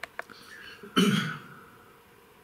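A man clearing his throat once, a short rough burst about a second in, after a couple of faint clicks.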